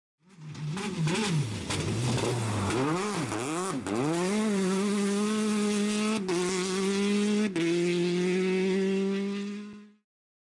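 Race car engine revving in quick up-and-down blips, then climbing to high revs and holding there. The note breaks briefly about six seconds in and again a second and a half later, like gear changes. It fades in at the start and fades out at the end.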